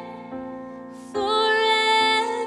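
Worship song with piano accompaniment: for about a second only sustained piano chords sound, then a woman's voice comes back in on a long held sung note.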